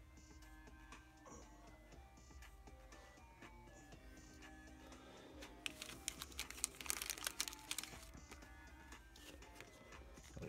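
Quiet background music with steady notes throughout. From about five and a half to eight seconds in, a clear plastic card protector crinkles and crackles as it is handled and opened.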